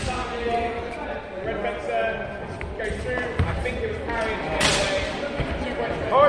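Many voices talking in a large, echoing sports hall, with a few dull thuds of feet on the hard floor and one sharp crack about three-quarters of the way through.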